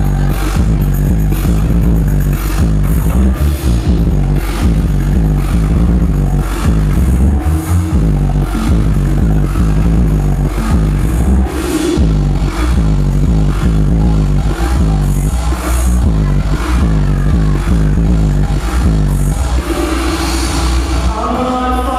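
Loud electronic dance music from a DJ set over a club sound system, with a heavy bass beat that runs steadily.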